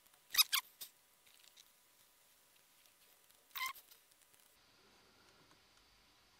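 Mostly quiet room tone broken by three brief high-pitched squeaky chirps, each falling in pitch: two close together about half a second in and one at about three and a half seconds. They are sound sped up along with a timelapse of the picture.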